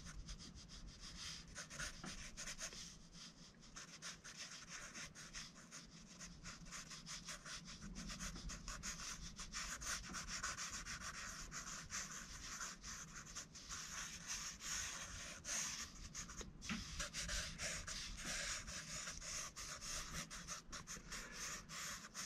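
Felt-tip marker scribbling rapidly on sketchbook paper: a faint, continuous run of quick scratchy strokes.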